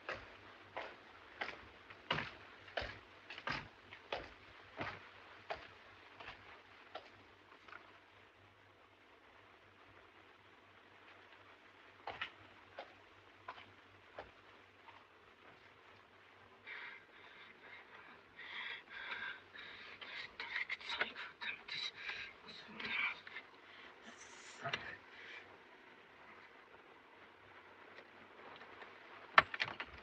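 Hard-soled footsteps on a corridor floor, about one and a half steps a second, fading away over the first several seconds. A few more single steps follow, then a quicker run of clicks with a light metallic ring in the second half.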